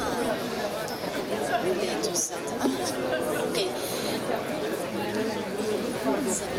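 Crowd chatter: many people talking at once, overlapping and indistinct, at a steady level.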